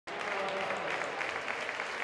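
An audience applauding in an indoor sports hall, with steady clapping throughout.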